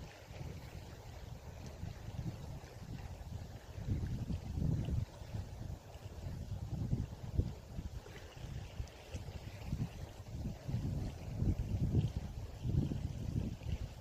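Wind buffeting the microphone in gusts: a low rumbling noise that swells and drops every second or so.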